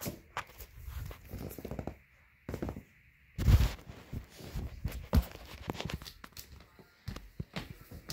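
Irregular clicks, knocks and rustling, broken by a stretch of near silence about two seconds in and followed by a louder thump about three and a half seconds in.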